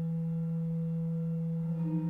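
Pipe organ holding a steady chord, a low note with a higher one above it, and a new note coming in near the end.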